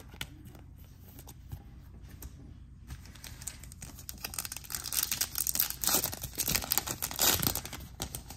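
Wrapper of a trading card pack crinkling and tearing as it is opened, quiet at first and growing louder in the second half.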